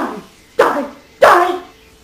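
Three short dog-like barks, each falling in pitch; the last two are the loudest.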